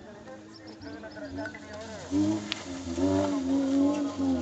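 Off-road jeep engine heard from a distance, quiet at first, then revving up about two seconds in and holding a steady pitch under load. Spectators' voices are mixed in.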